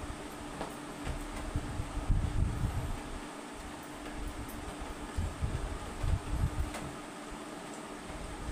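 Eating by hand from steel plates over a steady room hum with a faint steady tone. Low rumbling thuds come and go, loudest about two seconds in and again around five to seven seconds, with a few faint clicks.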